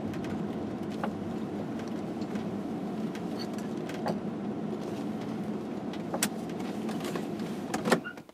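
Class C motorhome on a 2001 Chevy chassis driving slowly, heard inside the cab: a steady engine and road rumble with a few light knocks.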